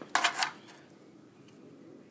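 A short hiss lasting under half a second right at the start, then faint steady room tone.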